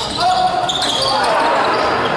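Live basketball game in a large hall: spectators' voices and calls, with a basketball bouncing on the court.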